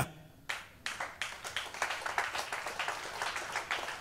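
Congregation clapping, starting about half a second in and going on steadily.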